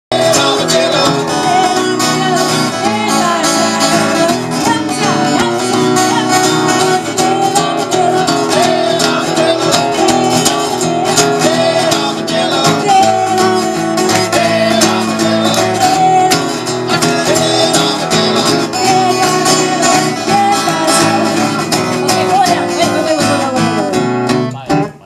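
Live music: guitars strummed and played with voices singing along.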